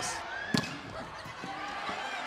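A volleyball struck hard by a hand, one sharp hit about half a second in, over steady arena crowd noise with scattered voices.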